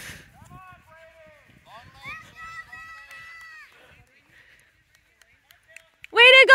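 Faint, distant voices calling out to runners, including a long drawn-out shout, over quiet outdoor background.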